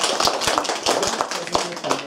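A small audience clapping, a dense run of hand claps that thins out toward the end.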